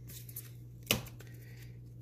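Trading cards being handled and flipped through in the hands, with faint card rustles and one sharp card snap about a second in, over a low steady hum.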